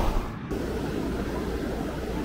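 Steady rumbling background noise with no distinct events, after a brief dropout just under half a second in.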